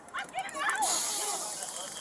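A sudden loud hiss starts just under a second in and slowly fades, over several voices shouting at once.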